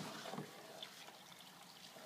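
Faint wet sloshing of a spoon stirring cooked hemp, tares and maize in their cooking water in a plastic bucket.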